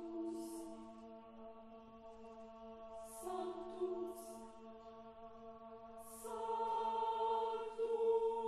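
Mixed choir singing sustained chords over a held low note. The chord shifts about three seconds in and again about six seconds in, growing louder toward the end, with brief hissing 's' consonants where the words change.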